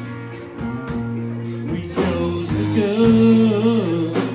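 Live rock band playing a slow rock song with drums, electric guitars and bass guitar, cymbals ticking in a steady beat. About halfway through, a male singer comes in with a rising line and holds a long note.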